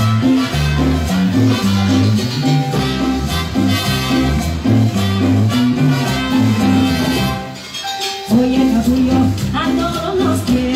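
Live cumbia band playing, with a steady bass line under the full band. The music drops away briefly near the end, then the full band comes back in.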